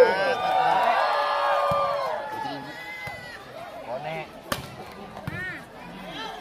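Spectators' voices shouting over one another, loudest at the start and dying down over the first two seconds, then scattered calls; about four and a half seconds in, a single sharp smack of a volleyball being struck.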